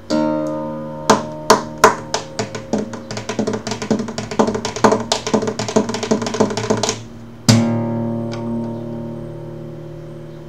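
Nylon-string flamenco guitar played solo: hard chord strums, then a quick run of many short strokes, then a short break and one strong chord left ringing and fading.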